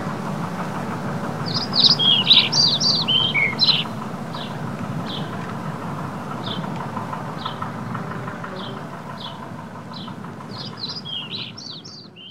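A small songbird singing: a quick flurry of high chirping notes, then single chirps every second or so, then another flurry near the end, over a steady low background rumble.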